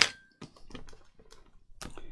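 Handling noise of paper and craft tools on a cutting mat: one sharp click right at the start, then scattered light taps and clicks, with another click near the end.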